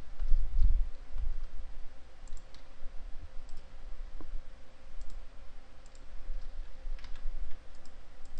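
Scattered clicks of a computer keyboard and mouse, a few every second or two, over a steady low hum.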